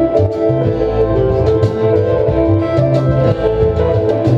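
Live indie-folk band playing a song: acoustic and electric guitars over a plucked upright bass line, with drums keeping time.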